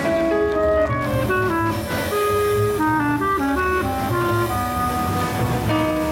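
Live jazz combo: a clarinet plays a melodic solo line over upright bass and drums.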